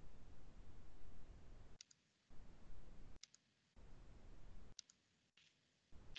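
Faint computer mouse clicks, in close pairs like double-clicks, three times, over a low background hum that drops out abruptly between them.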